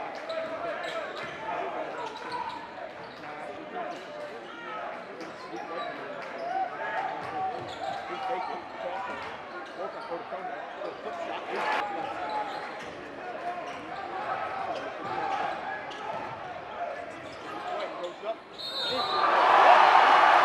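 Live basketball game sound in a large gym: a basketball being dribbled on the hardwood floor over a steady murmur of crowd voices and shouts. Near the end the crowd suddenly gets loud, cheering a play.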